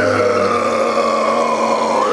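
A man's voice holding one long drawn-out note at a level pitch for about two seconds, then breaking off.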